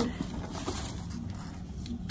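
Faint handling noise: soft rustling and a few light clicks as items, including a plastic license plate frame, are taken out of a bag.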